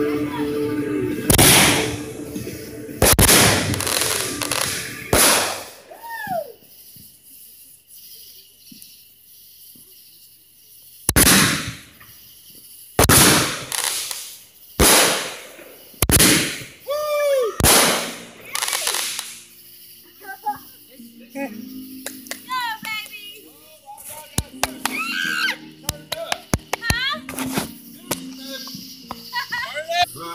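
Consumer fireworks going off: about ten loud bangs, each with a short echoing tail, in two bunches with a quiet gap of about five seconds between them. After that come people's voices and a rapid crackling.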